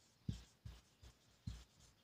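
Marker pen writing on a white board: a few faint, short strokes.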